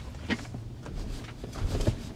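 Low road and tyre rumble inside a Tesla's cabin as the electric car pulls away slowly from a stop, with a few faint soft knocks.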